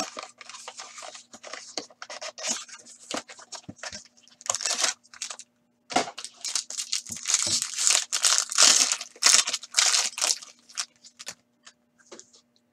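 Foil wrapper of a hockey card pack being torn open and crinkled by hand, in irregular bursts of rustling that are densest from about six to ten and a half seconds in.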